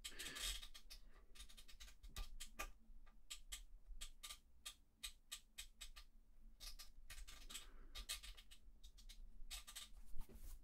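Faint, irregular clicking, several clicks a second, from the Empress Zoia's rotary encoder as its bare shaft is turned by hand, its contacts freshly sprayed with contact cleaner.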